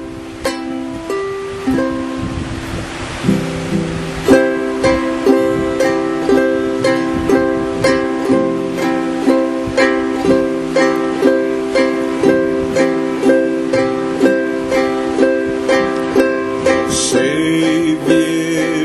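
Ukulele strumming chords. The strokes are slow and spaced at first, then settle after about four seconds into a steady strum of roughly two strokes a second.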